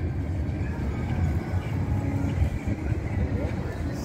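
Street traffic ambience: a steady low rumble of cars on a wide city boulevard.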